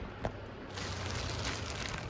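Clear plastic poly bag crinkling and rustling as a packaged jacket inside it is handled, with one sharp click about a quarter second in.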